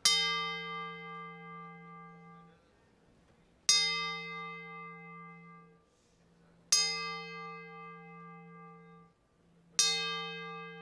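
Boxing ring bell, a metal dome bell, struck four times about three seconds apart, each strike ringing out and slowly fading. These are tolls of boxing's traditional ten-count, rung in memory of someone who has died.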